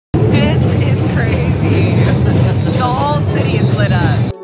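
A children's street drum band playing snare drums, loud and dense, with voices from the surrounding crowd rising over the drumming.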